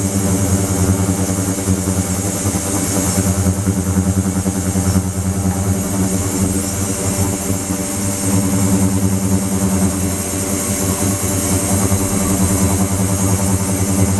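Ultrasonic cleaning tank running with metal parts immersed: a steady electrical buzz with a high hiss over it.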